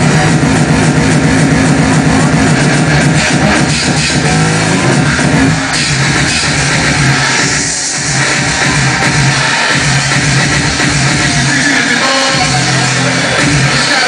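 Loud hardcore electronic dance music from a DJ set, played over a club sound system and heard from the dance floor, with a heavy pounding bass line. The track thins out briefly about eight seconds in, then comes back at full strength.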